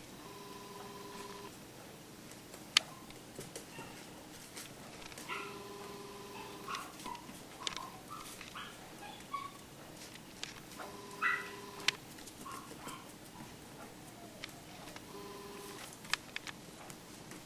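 Dogs whimpering and giving short yips, with light clicks of puppy claws and toys on a tile floor. A steady two-note tone sounds for about a second four times, roughly every five seconds.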